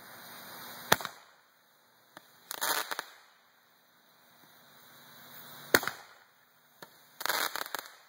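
World Class 'Beyond the Glory' Roman candles firing. A hiss builds, then a sharp pop as a shot launches, and about a second and a half later comes a short burst of crackling. The whole pattern happens twice.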